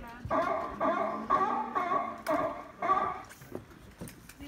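Animatronic dinosaur's sound effect played from a loudspeaker: a run of five short, pitched animal calls about half a second apart.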